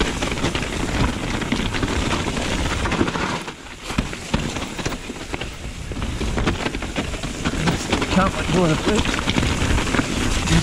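Mountain bike descending a forest trail, heard from a chest-mounted camera: a steady rush of tyres and wind with frequent rattles and knocks from the bike over the rough ground, easing briefly about three and a half seconds in. Near the end the rider's voice comes in.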